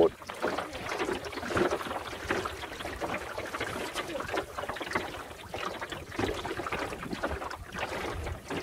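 Water splashing and lapping irregularly against the hull of a small wooden sailing dinghy under way.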